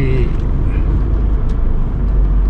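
Steady low rumble of a car's engine and tyres heard from inside the cabin as it moves slowly, with a faint click about a second and a half in.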